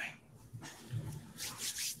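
Faint rubbing and rustling, with a brief swish at the start.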